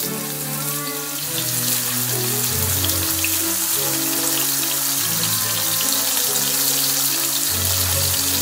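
Folded tofu skin (dòubāo) sizzling as it pan-fries in a shallow layer of oil, the sizzle growing louder about a second in as more pieces go into the pan. Background music with held notes plays over it.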